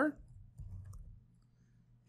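Faint keystrokes on a computer keyboard as a short word is typed, a few light clicks in the first second or so, then dying away.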